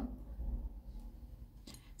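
Quiet room tone with faint handling of a porcelain Turkish coffee cup being lifted off its saucer, and a short faint click near the end.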